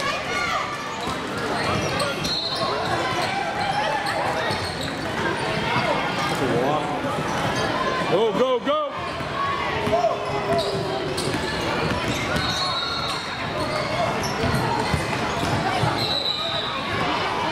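A basketball dribbled on a hardwood gym floor during a youth game, with players and spectators talking and shouting all around, echoing in a large hall.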